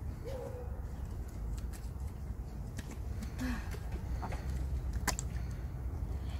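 Outdoor ambience: a steady low rumble of wind on the microphone, with a few sharp clicks as plastic water bottles are handled and a short bird call about half a second in.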